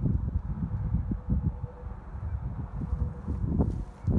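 Wind buffeting the phone's microphone in uneven low rumbles, with a faint steady tone in the background during the first half.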